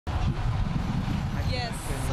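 Street traffic rumbling steadily, with a person's voice coming in about one and a half seconds in.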